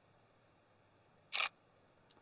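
Nikon D5600 DSLR shutter firing once, a single short click about a second and a half in, with near silence around it.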